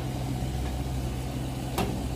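Petrol dispenser with vapour recovery running as fuel is pumped: a steady low hum. A single sharp click near the end.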